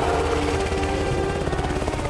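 Helicopter rotor beating rapidly, swelling in and then fading near the end, over orchestral string music.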